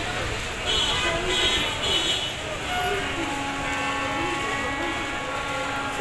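Street traffic outside a busy railway station, with three short high beeps about a second in, then a long steady horn note from about halfway that stops near the end.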